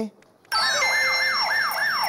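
Game-show bonus sound effect: a siren-like alarm of quick sweeping tones, about three or four a second, starting half a second in. It is the cue marking the extra-cash bonus for hitting survey answer number four.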